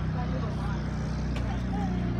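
Gunther Werks Porsche 993 400R's 4.0-litre flat-six idling steadily, with a slight change in engine pitch about one and a half seconds in.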